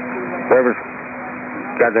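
Air traffic control tower radio transmission with a narrow, tinny sound: an open-microphone hiss and a steady low hum, one short word about half a second in, then the controller starting to speak near the end.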